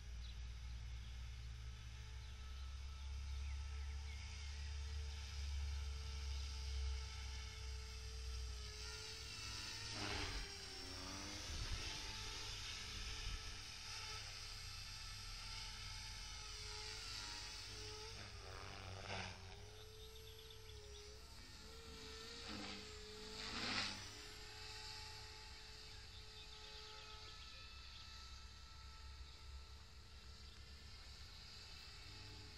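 Radio-controlled model helicopter flying, its rotor and motor giving a steady whine whose pitch wavers up and down as it manoeuvres. There are several louder swells between about ten and twenty-four seconds in. A low rumble sits under the first several seconds.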